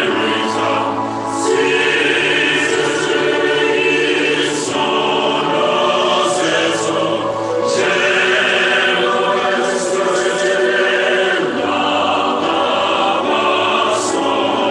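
A choir singing in long, held chords.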